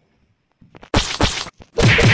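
Two loud whack sound effects, like slaps or blows, one about a second in and the second near the end.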